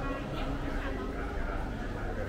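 Indistinct voices of people talking, with a steady low background hum.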